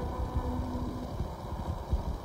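A lull between phrases of an old Persian song recording: the last of a held violin note dies away, leaving only the recording's low rumble and faint hiss.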